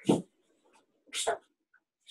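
Two short dog barks, about a second apart, coming over a video call's audio.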